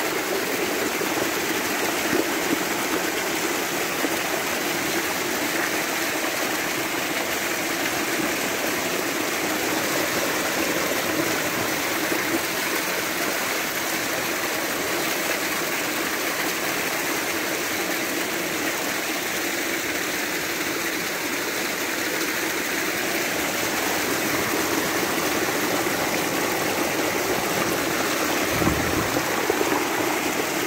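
Spring water gushing out from under the ground and pouring down a rock face: a steady rush of splashing water.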